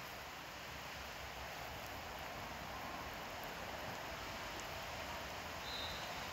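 Steady outdoor background noise, an even hiss with no distinct events, and a faint short high tone near the end.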